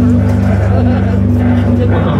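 Heavy metal band playing live at full volume: low, distorted guitar notes held over fast, even drum strokes.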